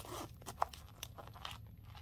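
Faint handling sounds of a small zip pouch being turned over in the hands: a few light clicks and scrapes as long acrylic nails and rings touch its coated canvas and zipper hardware.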